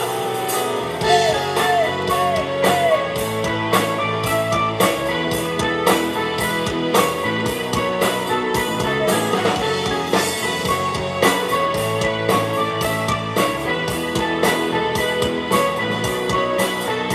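Live rock band playing an instrumental passage with electric guitars, bass guitar and drum kit at a steady beat.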